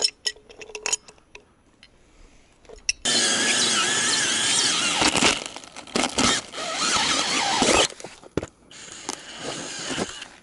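A few clicks and knocks of hand tools on a pipe fitting, then a cordless drill driving a hole saw through a 6-inch PVC sewer cap: a loud squealing whine that starts abruptly about three seconds in, breaks briefly a couple of times, and drops to a quieter run near the end.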